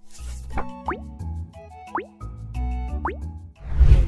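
Light background music with a steady bass line and three quick upward-sliding pop sound effects, roughly a second and a half apart, then a low thump near the end.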